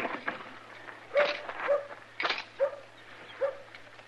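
A man groaning and whimpering in pain in short breaths, about two a second, starting about a second in: an old man who has just been kicked while down, with a possibly cracked rib.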